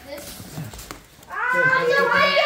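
A child's loud, high-pitched excited voice starts a little past halfway and carries on, over quieter background chatter.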